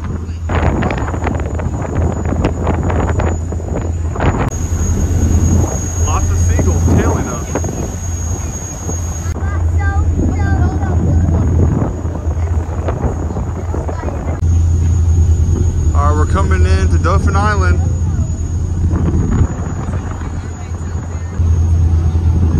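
Wind buffeting the microphone on a ferry's open deck over a steady low rumble, with voices heard briefly now and then.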